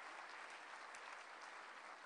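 Faint, steady applause from an audience.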